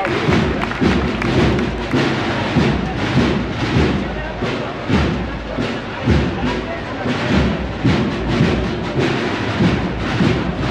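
Processional marching band's drums beating a slow, steady march rhythm, one heavy bass-drum stroke about every second, over crowd voices.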